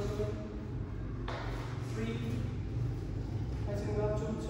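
A person's voice in a few short phrases over a steady low hum.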